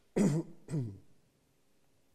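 A man clearing his throat twice, two short voiced bursts about half a second apart.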